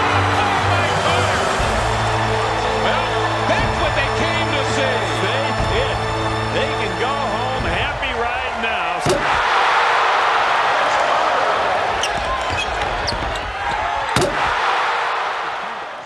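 Basketball game audio of an arena crowd cheering, with shoe squeaks and ball sounds, under background music whose low held notes stop about eight seconds in. After that the crowd noise swells, with two sharp bangs, one about nine seconds in and one near fourteen seconds.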